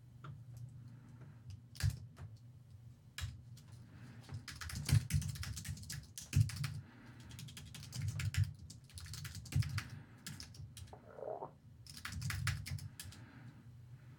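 Typing on a computer keyboard: quick bursts of keystrokes separated by short pauses.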